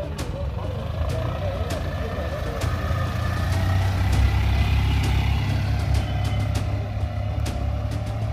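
Engine of a small ambulance van running as it drives past close by and pulls away, loudest about halfway through, with people talking around it.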